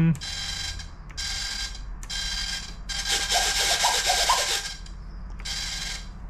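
The E-flite UMX Timber X's micro servos whine in short bursts as the transmitter sticks drive the flaperons and other control surfaces. There are about five high-pitched bursts, and the one in the middle is the longest. The flaperons are activated and working.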